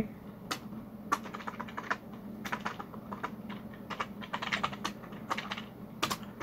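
Typing on a computer keyboard: irregular keystrokes, some in quick runs, while a function name is typed into a code editor.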